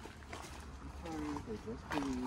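Footsteps on a gravel trail, with a child's voice speaking faintly from about a second in.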